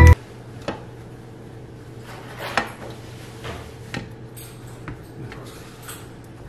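Light scattered taps and clicks, about five of them and the strongest about two and a half seconds in, as bread slices are set down by hand on a metal stovetop griddle and tray, over a steady low hum.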